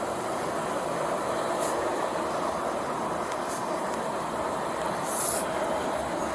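Steady hum of vehicle engines idling in stopped interstate traffic, with three short high hisses, the last and loudest about five seconds in.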